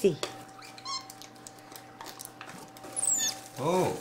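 Capuchin monkey giving high squeaks: a short chirp about a second in and a high falling whistle near the end, over soft rustling at a cardboard box.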